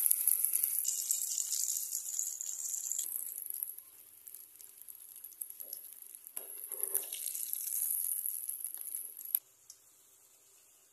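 Breadcrumb-coated potato cutlets sizzling as they deep-fry in hot oil in a wok. The sizzle is loud for the first few seconds, drops back in the middle, and comes up again about six seconds in with a few clicks of a metal spoon turning them. It cuts off suddenly near the end.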